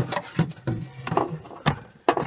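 Plastic freezer cover panel knocking and clicking against the freezer's plastic liner as it is pushed into place: several short, sharp knocks, the clearest about half a second in and near the end.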